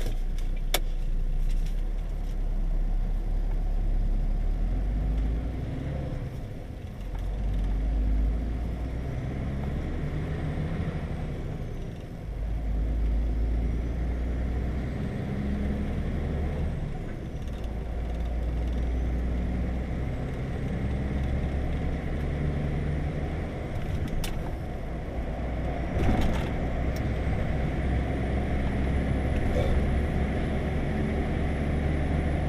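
Heavy truck's engine and road noise heard from inside the cab while driving: a steady low drone whose pitch and level step up and down several times, with a couple of brief clicks late on.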